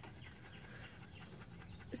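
Faint bird chirps, short and scattered, over a quiet outdoor background.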